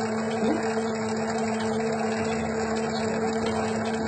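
Electric dough mixer running with a steady hum, its hook kneading a sweet leavened dough as flakes of butter are being worked in.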